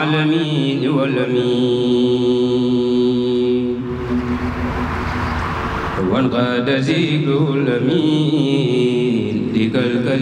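A single male voice chanting a Mouride khassida, an Arabic devotional poem, into a microphone, drawing out long, steady held notes. Near the middle the voice fades for about two seconds under a noisy rush, then comes back.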